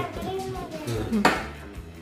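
One sharp metal clink about a second in, a metal pumpkin scoop knocking on the table or pan, amid children's voices and laughter over background music.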